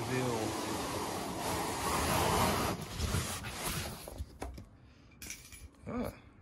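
Cardboard scraping and rustling as an inner guitar box is slid out of its outer shipping carton: a steady rough scrape for about three seconds, then softer rustles and a few light knocks of handling.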